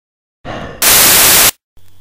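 A loud burst of white-noise static, lasting under a second and cutting off suddenly, with a shorter, quieter sound just before it.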